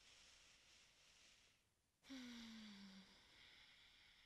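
A woman breathing out audibly, close to the microphone: a faint breathy exhale, then a soft voiced sigh about two seconds in that falls in pitch and lasts about a second before trailing off.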